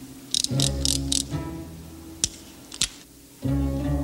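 Metallic clicks of a revolver being handled: a quick run of four short clicks within the first second or so, then two single sharp clicks. These play over an orchestral score of low sustained strings that swells loudly near the end.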